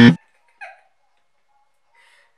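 A loud game-show style wrong-answer buzzer, one steady low buzzing tone, cuts off suddenly just after the start. A short soft laugh follows about half a second in.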